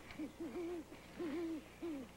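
Owl hooting: a run of four low hoots, the first short and the middle two longer and wavering.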